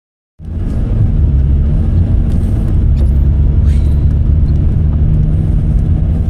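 Steady low engine and tyre rumble heard from inside a vehicle's cab while it drives along a snow-covered road, starting abruptly about half a second in, with a few light rattles.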